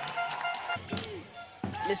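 A basketball being dribbled on a hardwood court: a few sharp bounces. Held musical notes sound behind them and stop within the first second, and voices are heard.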